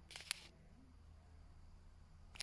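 One short, sharp click just after the start, over a faint low hum; otherwise near silence.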